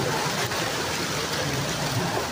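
Steady hiss of rain and floodwater, with feet splashing through ankle-deep water.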